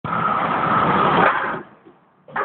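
A semi truck pulling a flatbed trailer passing close by: loud, steady road noise of engine and tyres that falls away sharply about a second and a half in.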